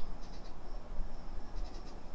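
Insects chirring outdoors: a steady high-pitched trill that breaks off and resumes, with short bursts of rapid chirps. Under it is a soft low rumble and the rustle of papers being handled.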